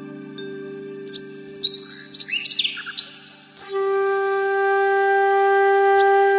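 Calm background music of long held notes with bird chirps layered over it, a cluster of quick chirps between about one and three seconds in. About three and a half seconds in, a louder held flute note comes in and sustains.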